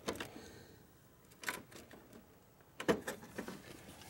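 A few short clicks and knocks of a screwdriver against plastic and metal parts behind a car grille: one near the start, one about a second and a half in, and a cluster around three seconds in, with quiet between.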